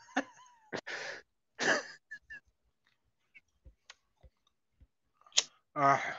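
Mostly quiet, with a few short chuckles and breaths and some faint small ticks. Near the end a lighter is struck with one sharp click to light a cigarette.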